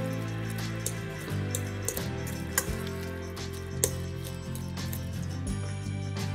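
Background music with steady sustained notes, over a fork stirring soft mashed potatoes and milk in a stainless steel bowl, with scattered clicks where the fork knocks against the metal.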